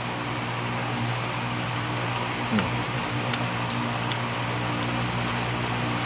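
Steady hum of an electric fan running, with a few faint clicks in the second half.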